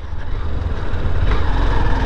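Honda motorcycle engine running at low road speed, a steady low rumble, with a higher sound joining about a second and a half in.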